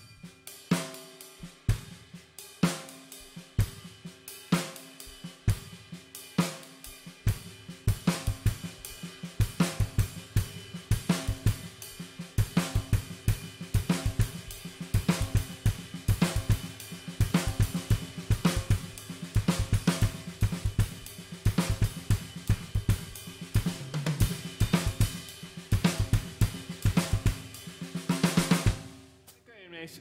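Drum kit played in a steady paradiddle pattern on snare, toms and cymbals; about seven seconds in, extra bass drum strokes join on the right-hand notes, giving it a heavier low end.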